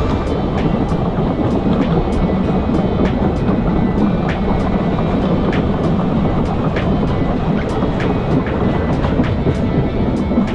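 Running noise of a passenger train carriage heard from aboard: a steady rumble of wheels on the rails with frequent sharp clicks, about two a second, from the wheels passing over rail joints.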